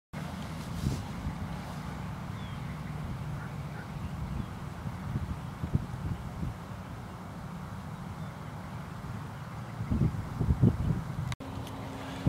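Wind buffeting an outdoor microphone: a steady low rumble that swells irregularly, with stronger gusts about ten seconds in, before the sound cuts off abruptly near the end.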